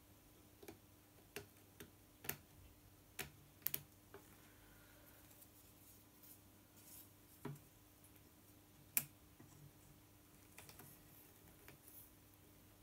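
Scattered light clicks and knocks from handling a frame loom while weaving a row: the shed stick, comb and weaving needle tapping against the wooden frame and warp. The taps come irregularly, about a dozen, the sharpest one about nine seconds in, over a faint steady hum.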